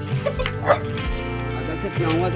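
A dog barking a few short barks in the first second, over background music.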